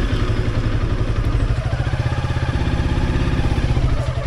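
Motorcycle engine catching at the very start and then running at low revs with an even, rapid pulse as the bike rolls off slowly.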